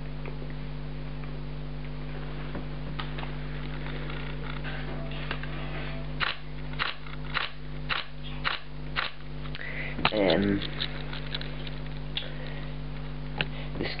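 Sony Alpha 700 DSLR shutter firing repeatedly in continuous drive, a run of about eight clicks at roughly two a second, midway through. The burst has slowed because the slow memory card has to write the buffered frames.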